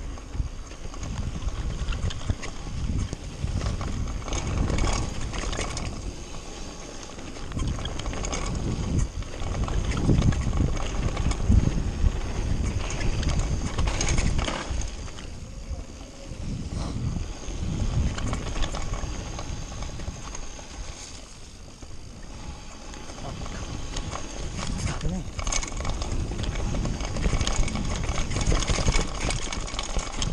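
Mountain bike descending a rough dirt trail at speed: tyres crunching over gravel and rock, with a constant run of knocks and rattles from the bike, under heavy wind rumble on the body-mounted camera's microphone. The loudness surges and eases with the terrain.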